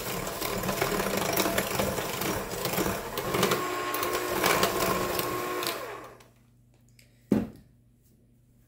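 Electric hand mixer running steadily, its beaters whisking sugar and melted butter in a glass bowl, with scattered clicks. The motor dies away about six seconds in, and a single short thump follows a second later.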